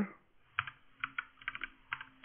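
Typing on a computer keyboard: a quick, uneven run of about ten keystrokes, starting about half a second in.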